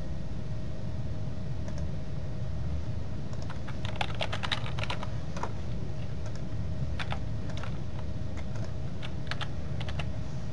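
Typing on a computer keyboard: a quick run of keystrokes about four seconds in, then a few scattered keys near seven and nine seconds, over a steady low hum.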